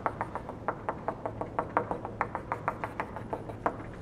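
Chalk tapping against a blackboard in a quick, even run of about six taps a second as a dotted curve is dabbed on, stopping shortly before the end. A low steady hum lies underneath.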